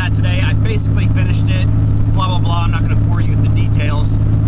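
Steady low drone of a vehicle's engine and road noise, heard from inside the cabin while driving.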